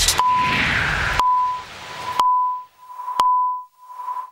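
End of a TV programme's electronic title music: a short, high beep sounds about once a second over the beat. About a second in the beat drops out, leaving two sharp clicks a second apart, each followed by the beep ringing away in an echo.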